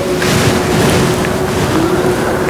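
A rushing, wind-like noise on the pulpit microphone, as of a person breathing out close to it, over a faint steady hum.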